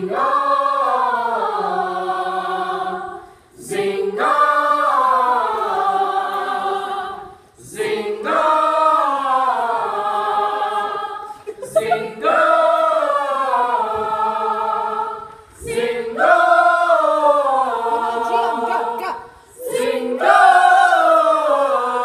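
A group of young singers singing a vocal warm-up together, unaccompanied: the same short phrase repeated about every four seconds, each sliding down in pitch, with brief breaths between.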